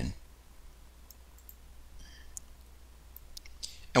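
Several faint, scattered clicks of a computer mouse over a low steady hum, as drawings on an on-screen chart are cleared.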